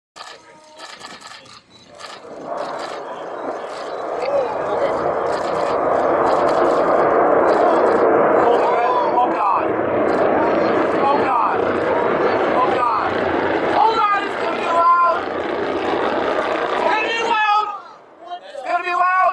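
Distant roar of the Antares rocket's failed launch and explosion, building over the first few seconds and then holding steady and loud. People's voices shout over it in the second half, and it cuts off abruptly near the end.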